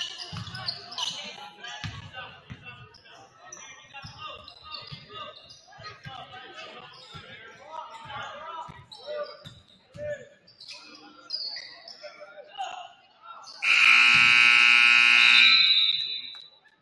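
Gymnasium scoreboard buzzer sounding one steady blast of about two seconds near the end, as the game clock runs out to end the third quarter. Before it, a basketball bounces on the hardwood court amid voices in the gym.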